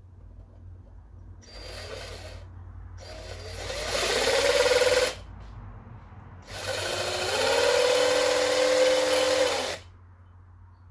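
A drill fitted with a small cutting-disc attachment, run three times into the plastic of a PCIe x1 slot: a short burst, then two longer runs that rise in pitch to a steady whine as the disc grinds the slot's end away.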